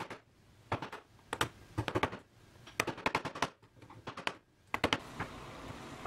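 Bench chisel paring the end of a slot in ash by hand: sharp clicks and ticks in quick clusters as the edge cuts the wood fibres.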